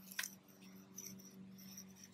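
Faint rubbing of fingers blending soft pastel chalk on a driveway, with a short tap about a quarter second in, over a steady low hum.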